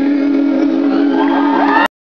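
Live band holding one last steady note at the end of a song, with the bass already stopped, while the crowd starts cheering and whooping; the sound cuts off abruptly just before the end.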